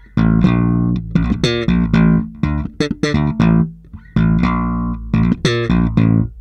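Electric bass guitar, a Fender Jazz Bass, played alone: a fast funk-rock bass fill of short, percussive notes built from strikes on an open string, hammer-ons and pull-offs, with a brief break about four seconds in.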